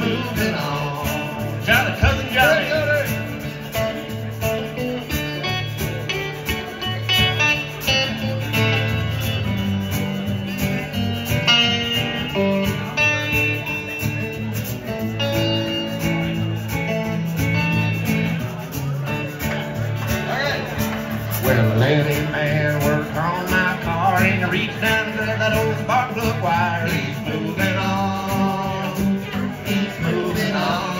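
Live country band playing an instrumental break on electric guitar and resonator guitar (dobro), over a steady washboard rhythm.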